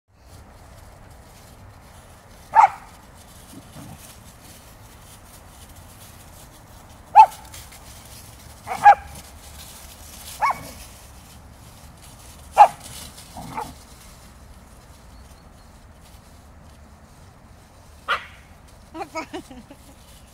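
Dog barking in play, a Siberian husky puppy and a Samoyed romping together: single short, sharp barks every few seconds at irregular intervals, then a quick run of three near the end.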